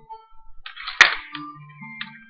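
A single sharp click about a second in, with a brief rustle around it, as hands handle the wires and clips on a cluttered electronics bench. Faint steady tones sit underneath.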